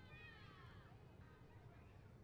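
Near silence, with faint, high, wavering cries in the first second over a low background rumble.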